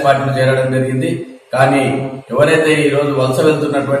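Speech only: a man making a press statement in Telugu, in a steady, even delivery with short pauses about a second in and past the halfway mark.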